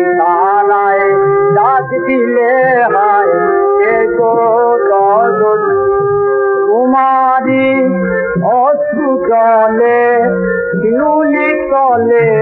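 Old 1928 gramophone recording of a Bengali gazal: a male voice sings long, ornamented melodic lines that bend between held notes, over a lower accompanying part. The sound is dull and lacks high treble.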